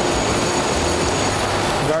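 Steady hum and whir of ice cream plant production-line machinery, with a constant low drone and a faint high whine running underneath.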